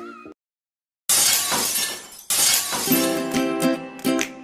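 Channel intro sting: after a short silence, a sudden crash-like sound effect with a bright hiss that fades, a second one just after two seconds in, then a plucked-string jingle starting near the end.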